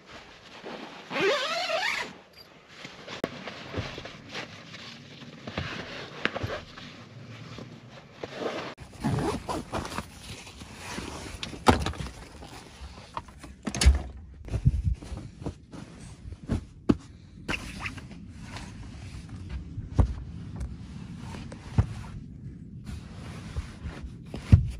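Sleeping bag and bedding being gathered and shoved around in a pop-up camper tent: steady fabric rustling broken by scattered sharp knocks and thunks, the loudest about 14 seconds in.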